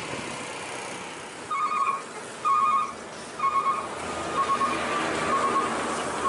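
A truck horn sounding two tones together in short blasts, about one a second, over the steady noise of passing traffic.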